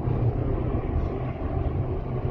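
Wind rushing over a phone microphone mounted on a moving bicycle's handlebars: a steady low rumble with a faint hiss above it.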